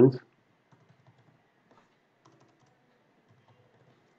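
Faint computer keyboard typing: a few scattered, light keystrokes, following the tail of a spoken word at the very start.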